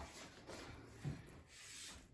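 Faint rubbing of hands rolling soft cheese-bread dough, with one soft tap about a second in as a dough ball is set down on an aluminium baking pan.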